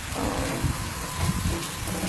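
Beef ribs sizzling on a charcoal grill, a steady hiss, with low rumbling thuds underneath that grow slightly louder shortly after the start.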